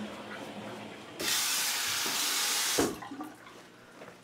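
Water running from a bathroom tap for about a second and a half, turned on and off abruptly.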